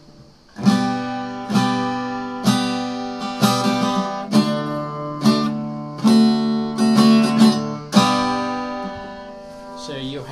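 Harley Benton GS Travel mahogany acoustic travel guitar with an all-laminate body, strummed in chords about once a second. The last chord is left ringing and fades out near the end.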